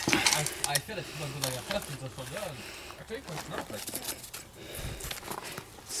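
Indistinct low-voiced talk, with scattered clicks and light handling noise.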